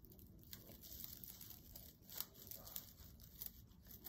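Faint rustling and crinkling of synthetic mesh netting being scrunched and looped by hand, with a few small crackles.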